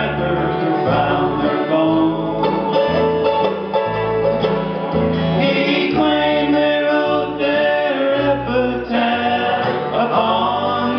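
A live acoustic bluegrass band playing: picked acoustic guitars, mandolin and banjo over a stepping guitar bass line, most likely an instrumental break between verses.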